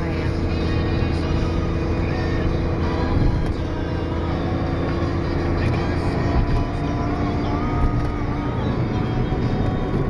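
Car driving at speed, heard from inside the cabin: a steady low rumble of engine and tyres with a steady hum that fades out near the end.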